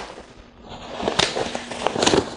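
Stroller seat and canopy being handled: fabric rustling and two sharp plastic clicks in the second half as the reversed seat is settled into the frame.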